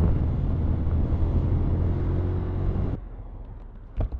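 Wind rushing over the microphone with the low drone of a Honda NC 750X motorcycle riding at road speed. About three seconds in it cuts abruptly to a much quieter low rumble.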